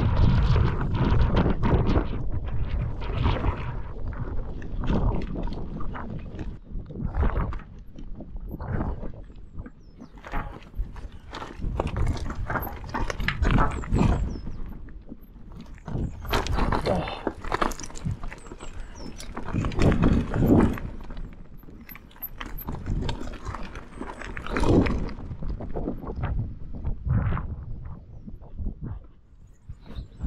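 Mountain bike descending a steep, loose stony track: tyres crunching and clattering over rocks and the bike rattling in uneven bursts, with wind buffeting the microphone. The clatter is loudest at the start and again around two-thirds of the way in.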